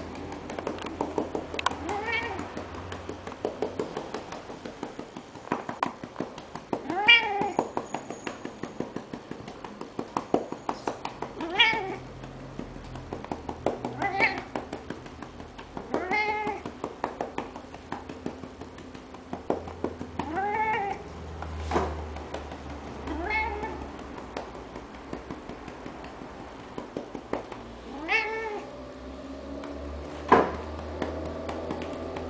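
Domestic cat meowing repeatedly, about eight meows a few seconds apart, each rising and then falling in pitch.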